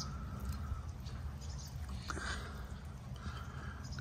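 Backyard hens pecking and eating at a watermelon bowl of mixed fruit, with faint pecking clicks and three soft, short clucks.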